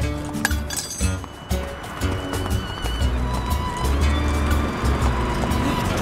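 Cartoon background music with held notes and a warbling high line, with the clip-clop of galloping horses faintly underneath.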